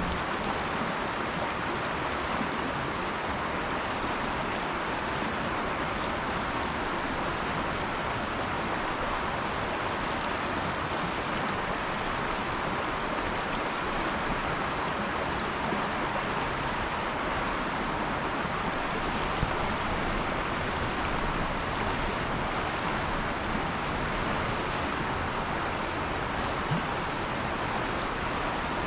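Campfire of burning logs and embers giving a steady hiss, with a few faint crackles.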